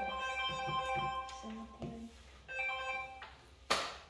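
A phone ringtone: a short electronic melody of steady tones playing in two phrases, about a second apart. A single sharp knock near the end is the loudest sound.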